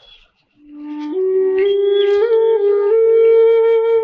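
Slow background music: a flute-like wind instrument begins about half a second in and climbs through a few held notes, ending on a long sustained note.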